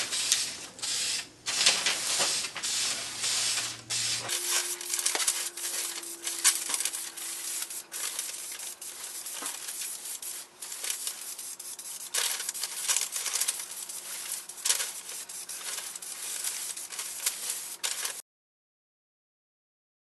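Aerosol can of Krylon clear varnish hissing as it sprays in repeated bursts with short pauses between them.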